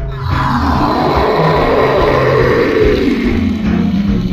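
A long, rough monster-roar sound effect that falls in pitch over about four seconds and dies away near the end, laid over background music.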